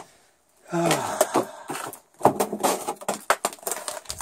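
A short exclamation, "Ah!", about a second in, then a run of scuffs, knocks and rustling from moving about among wooden boards and debris.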